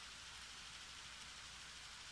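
Faint steady hiss of the recording's background noise, with a low hum underneath.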